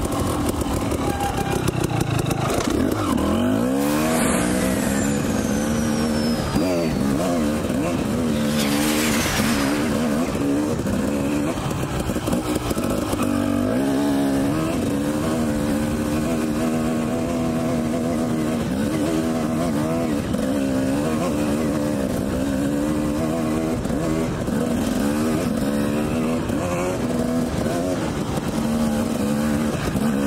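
Dirt bike engine running under way, its pitch rising and falling as the rider works the throttle. A brief rushing noise comes about nine seconds in.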